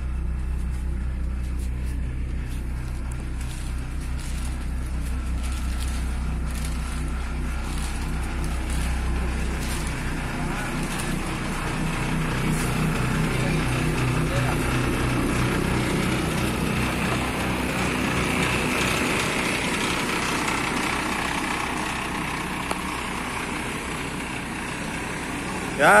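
A bus's diesel engine running at idle, a steady low hum heard from inside the passenger cabin; the deepest part of the hum drops away about ten seconds in.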